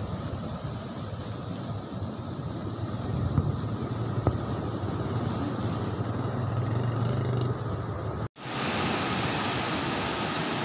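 Floodwater rushing and churning through the gates of a barrage, a steady broad rush with wind buffeting the microphone. It breaks off for an instant about eight seconds in and comes back hissier.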